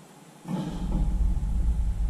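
A man blowing out a long, heavy breath, out of breath from hauling boxes, with the breath buffeting the microphone as a deep rumble; it starts suddenly about half a second in.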